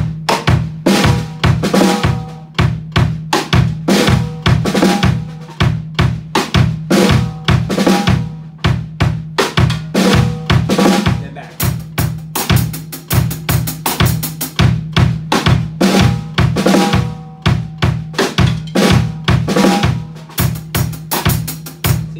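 Acoustic drum kit playing a steady groove: sixteenth-note hi-hat, bass drum and snare rim shots on the backbeat, alternating with a second beat in which the high strokes come thicker from about halfway through.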